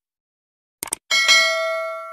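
Subscribe-button sound effect: a quick double mouse click about a second in, then a notification bell that dings twice and rings on, slowly dying away.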